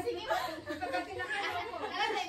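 People talking, with a laugh near the end.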